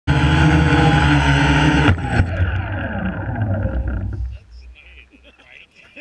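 Quadcopter's electric motors and propellers whining at full throttle as the battery runs dry. About two seconds in it hits the ground with a knock, and the motors wind down in a falling whine that fades out over the next two seconds.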